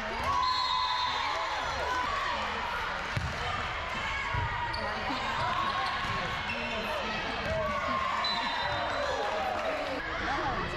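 Indoor volleyball rally on a hardwood gym floor: sneakers squeaking in short chirps, the ball struck a few times with dull thumps, and players' and spectators' voices calling in the hall.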